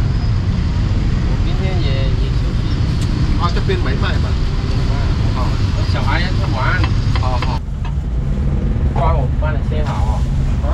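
Steady low rumble of road traffic, with car and motorbike engines passing close by, under people talking on and off.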